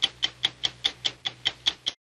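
Stopwatch ticking sound effect, the signature tick of a TV news programme's closing card: a steady run of sharp ticks, about five a second, that stops suddenly just before the end.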